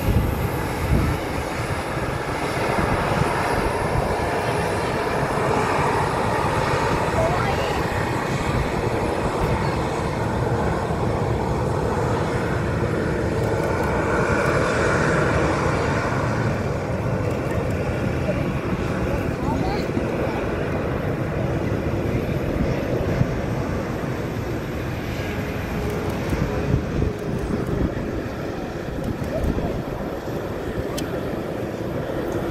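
Jet engines of a Boeing 737-800 (CFM56-7B turbofans) running at low taxi thrust, a steady rumble and hiss that swells slightly about halfway through.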